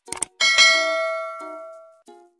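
Sound effect for a subscribe-button animation: a couple of quick mouse clicks, then a bright bell ding about half a second in that rings on and fades away.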